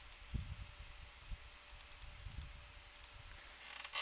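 A few faint, scattered clicks and soft low bumps from working a computer at a desk, over a faint steady hum.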